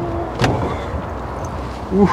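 A single clunk as the padded engine cover inside the cab of a UAZ 'Bukhanka' van is unlatched and lifted, about half a second in, over a steady low hum.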